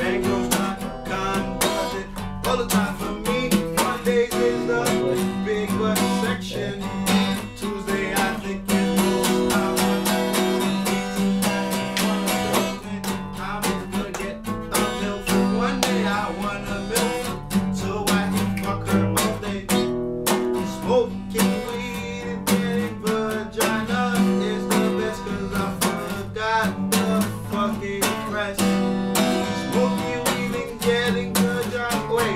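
Acoustic guitar played without pause, a steady run of chords and notes.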